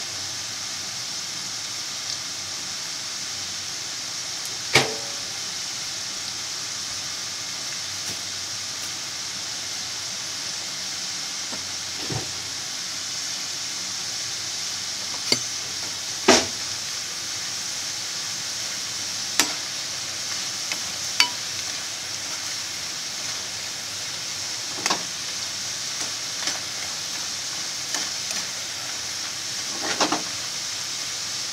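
Potato strips deep-frying in hot oil in a frying pan: a steady sizzle. About eight sharp clicks and knocks stand out above it, the loudest about two thirds of the way through as a slotted metal ladle stirs the potatoes.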